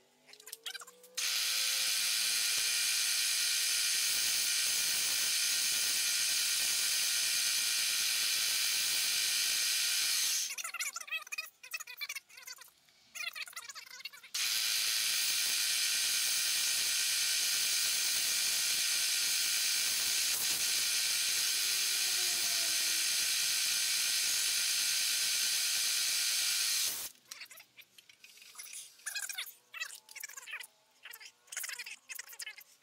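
Slitting saw on a milling machine cutting through a connecting rod: a steady, high-pitched ringing whine made of many fixed tones, in two long stretches of about nine and twelve seconds, with a few seconds of quieter, irregular scraping between them and after.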